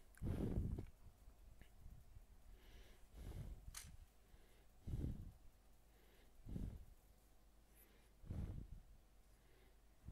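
Quiet stretch of Lego building: soft, low puffs of breath about every one and a half to two seconds, close to a headset microphone, with a faint click of plastic Technic pieces about four seconds in.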